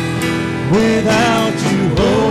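Live worship band playing a gospel song: acoustic guitars, bass, keyboard and drums holding a chord, with singing voices coming in under a second in.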